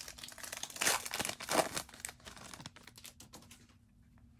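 Foil wrapper of a trading-card pack crinkling and tearing as it is opened by hand, in a run of crackly rustles, loudest about one and one and a half seconds in, dying away near the end.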